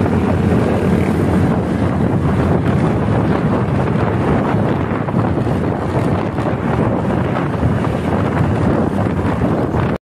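Steady wind rushing over the microphone, mixed with the road noise of a vehicle driving at speed.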